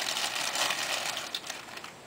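Rustling and crinkling of product packaging as items are handled, with a few light clicks about a second and a half in, then quieter.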